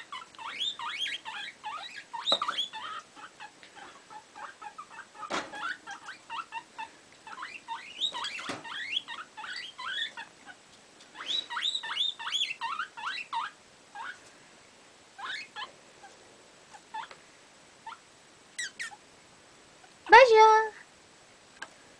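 A guinea pig chattering in a long run of short squeaky calls, several a second, each gliding in pitch. The calls come in dense clusters for the first two-thirds, then thin out to a few isolated calls near the end. There is one sharp click about five seconds in.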